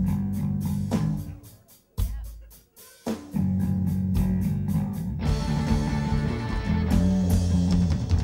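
Live rock band playing an instrumental passage: a heavy bass guitar riff over drums in a stop-start pattern that breaks off twice in the first three seconds, then runs on steadily, with guitar and cymbals filling in from about five seconds in.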